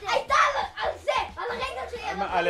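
Children's voices, high-pitched and excited, talking and calling out over one another as they play.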